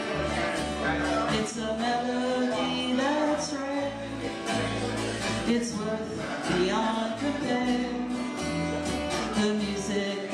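Live acoustic music: a strummed acoustic guitar over an acoustic bass guitar, with a melody line on top.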